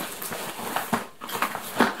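A parcel being unpacked by hand: rustling and handling noise from its packaging, with sharper knocks about one second in and again near the end.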